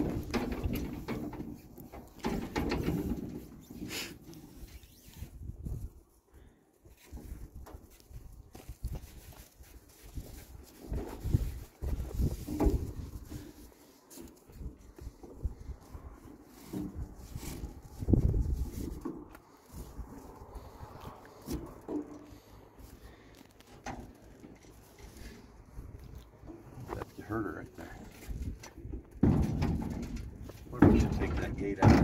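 Horses and mules shifting in a metal stock trailer, with scattered knocks and thumps against its floor and walls and low voices now and then.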